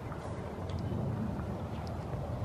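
Wind buffeting the microphone: a steady low rumble that grows a little louder in the second half.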